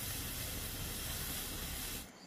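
A large lidded pot boiling hard on a wood fire, with steam hissing steadily out from under the lid.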